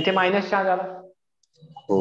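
A man speaking in a lecture, with a short pause about a second in.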